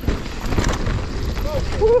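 Santa Cruz 5010 mountain bike rolling fast down a dirt trail, with wind buffeting the microphone and a steady rumble and rattle from tyres and frame, broken by a couple of knocks in the first second. A voice breaks in near the end.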